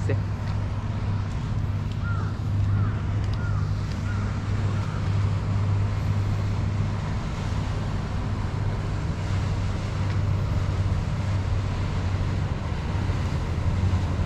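A steady low engine hum with wind noise on the microphone, with a few faint short chirps in the first few seconds.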